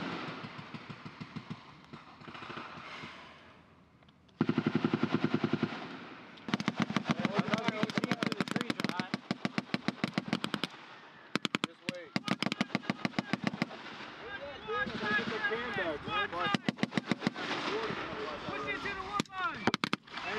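Machine-gun fire in long bursts of rapid shots, starting about four seconds in, with brief breaks between bursts.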